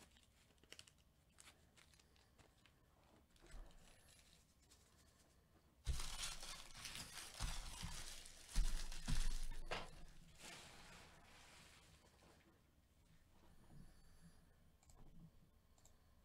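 Plastic trading-card packaging crinkling and tearing for about four seconds in the middle, between faint clicks and handling noise.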